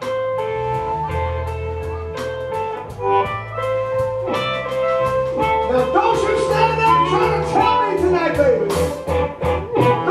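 Live blues band playing a 12-bar blues in A minor, electric guitars, bass and drums. The full band comes back in at once at the start after a quiet break. Guitar fills get busier and bend more from about six seconds in.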